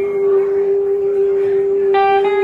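A male singer holds one long, steady sung note into a microphone, with keyboard accompaniment behind it.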